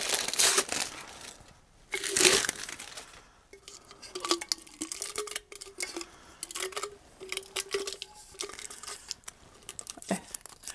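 Paper crinkling and tape tearing as the butcher paper and tape wrap are pulled off a freshly sublimated tumbler. There are two louder rustles near the start, then softer scattered crackles.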